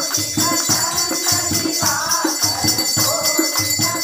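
A group of women singing a Hindi devotional bhajan together, over a steady, fast percussion beat with jingling rattles.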